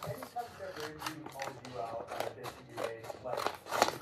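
Scissors cutting through a sheet of iron-on vinyl, with the stiff plastic sheet crinkling: an irregular run of short snips and crackles.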